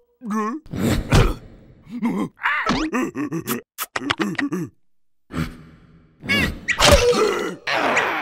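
Cartoon character vocalizations without words: wobbly, wavering cries, groans and gasps mixed with comic whacks and knocks. There is a short pause about five seconds in, then more cries and hits near the end.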